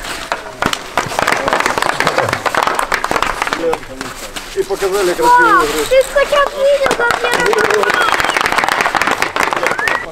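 A small crowd clapping steadily, with people's voices calling out in the middle.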